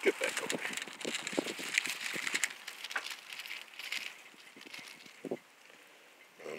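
Aluminium foil crinkling and rustling under a hand, as a run of quick small crackles that thins out after about four and a half seconds.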